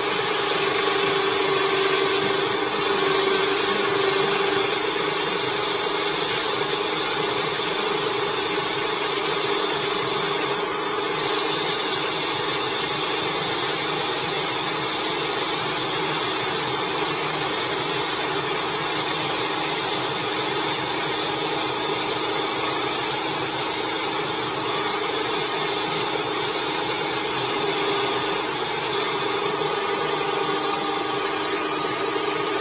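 A RIDGID FlexShaft drain-cleaning machine, driven by a drill, spinning its flexible shaft inside the blocked drain line. It runs with a loud, steady whine, with a brief dip about eleven seconds in.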